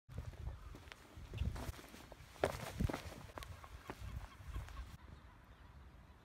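Faint, irregular footsteps with a low rumble underneath, dying away about a second before the end.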